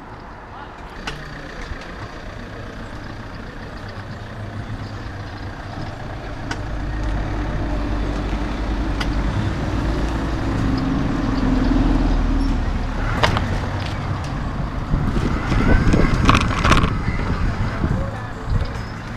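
A bus engine rumbles nearby, growing louder through the middle and then easing off. Several sharp knocks and brief voices follow near the end.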